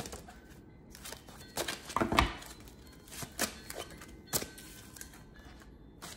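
Tarot cards being handled: a few scattered light taps and flicks of card stock, with a soft thump about two seconds in.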